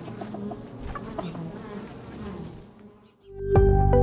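Honeybees buzzing at a hive entrance, a wavering hum that fades out about three seconds in. Then music comes in loudly with a deep bass note and held tones.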